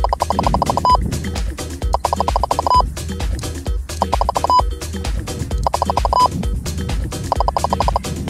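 Stalker LR lidar speed gun's tone sounding in bursts of rapid electronic pulses, each ending in a short steady beep, about five bursts of uneven length. Background music with a steady low beat plays underneath.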